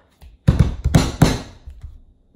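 Handling noise from the camera being grabbed: a cluster of knocks and rubbing thuds on the microphone, starting about half a second in and dying away near the end.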